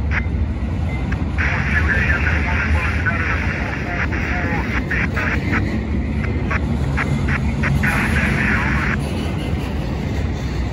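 Double-stack intermodal freight cars rolling past close by: a steady low rumble of steel wheels on rail, with a higher-pitched rail noise that comes and goes.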